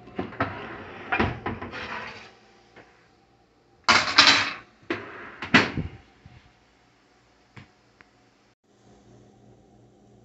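Electric range oven door pulled open with a rattling scrape, then loud metal clanks about four and five and a half seconds in as the metal baking pan is taken out and set down on the stovetop's coil burners.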